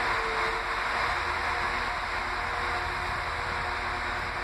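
Northern class 195 diesel multiple unit standing at a platform with its engine idling: a steady low hum under an even hiss.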